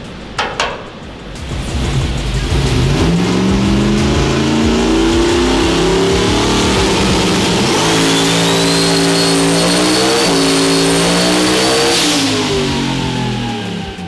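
Single-turbo high-port small-block Ford V8 in a Fox-body Mustang making a full-throttle pull on a hub dyno: the revs climb from about two seconds in and hold under load while a high whine rises over the engine. Near the end the throttle closes sharply and the revs fall away.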